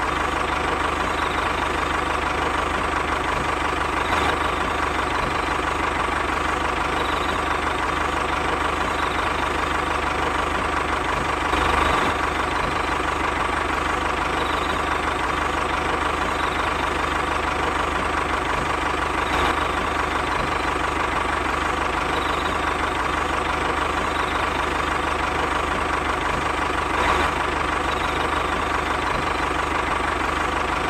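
Steady engine-like running drone with a constant mid-pitched whine under it, swelling slightly about every seven to eight seconds, accompanying the toy tractor as it pulls the seed drill.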